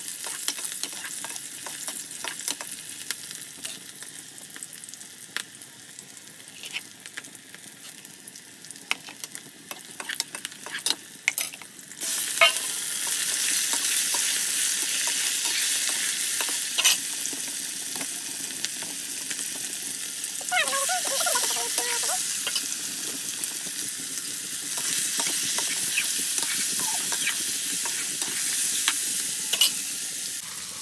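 Chicken pieces frying in a wok over a wood fire, a metal ladle stirring and scraping against the pan with a light sizzle. About twelve seconds in, the sizzle suddenly turns loud and steady, as more raw chicken goes into the hot oil.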